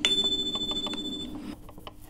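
Electronic chime from the laptop's playback: a high tone with a lower one under it, starting suddenly and fading out after about a second and a half. It is the cue in a NAATI CCL recorded dialogue that a segment has ended and the candidate should begin interpreting.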